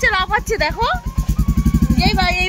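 Motorcycle engine idling with a fast, even pulse, with people's voices talking over it.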